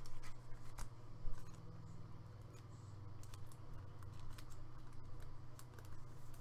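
Trading card handled and slid into a soft plastic penny sleeve: scattered light clicks and crinkles of thin plastic.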